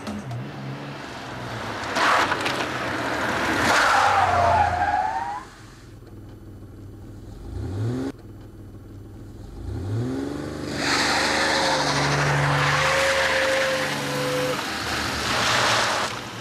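A BMW saloon driven hard round a bend, its tyres squealing in two long stretches, the second longer, with the engine briefly revving up twice in the quieter gap between.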